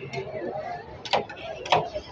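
Two metal spatulas chopping and scraping ice cream base as it freezes on a steel cold plate: sharp metallic clacks, the loudest about a second in and again near the end.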